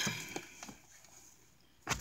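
A few faint handling clicks, then one sharp knock near the end, as the items being shown are moved and set down.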